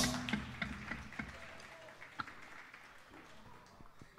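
A live rock band's closing hit on electric guitars, bass and drums rings out and dies away over the first second or two, leaving a few scattered claps.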